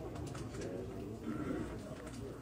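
Indistinct, quiet murmur of several people talking in a meeting room, with no clear words.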